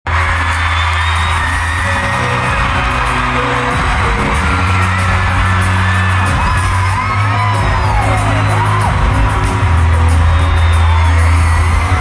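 Live band music over a stadium PA, heard from within the crowd, with long, steady bass notes that change every few seconds. Many fans scream and whoop over it throughout, most in the middle.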